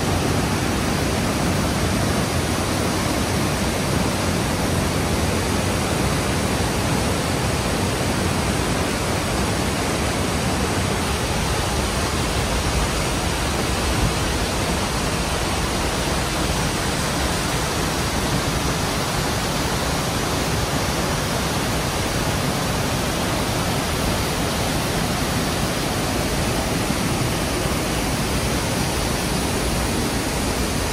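Mountain torrent cascading through a narrow rock gorge: a steady, really loud rush of white water.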